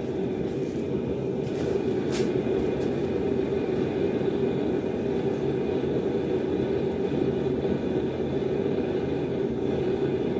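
Gas forge burner running with a steady rushing noise. A few faint clicks come in between about one and a half and three seconds in.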